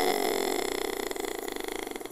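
A person's voice in a long, rattly drone that fades away over about two seconds.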